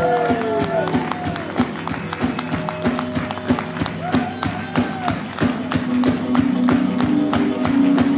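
Live rock band playing electric guitar and drums, with a fast, even ticking beat on the hi-hat. A guitar note slides down in the first second.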